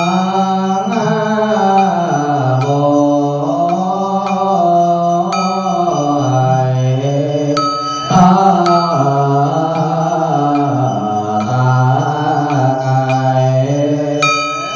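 Vietnamese Buddhist hymn praising incense (tán), chanted by a voice in long, slow, sliding held notes. A struck instrument with a brief ringing tone sounds about eight seconds in.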